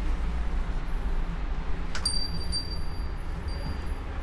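A shop door's bell gives a sharp click and a high, thin ringing chime about two seconds in that fades away over a second or so, over a steady low rumble of engines from street traffic.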